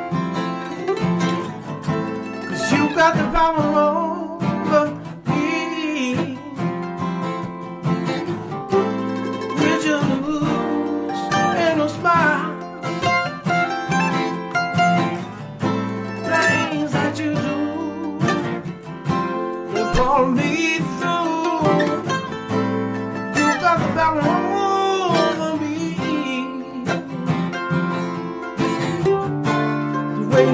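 Two acoustic guitars strumming with a mandolin picking melody lines over them: the instrumental opening of a bluegrass-style acoustic song, before the vocals come in.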